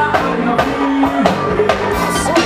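Loud live band music with a steady, driving drum beat.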